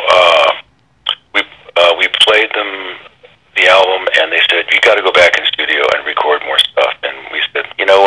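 Speech only: people talking in an interview.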